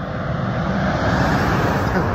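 A car driving past on the road, its noise swelling and peaking near the end.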